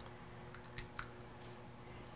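Faint kitchen handling sounds: two light clicks of utensils about a second in, against quiet room tone.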